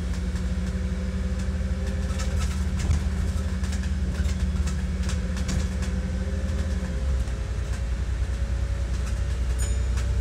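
Wright Gemini DAF DB250 double-decker bus heard from inside the passenger saloon while under way: a steady low engine drone with clicks and rattles from the body and fittings. A steady hum stops about seven seconds in, and a faint whine rises slowly in pitch over the second half.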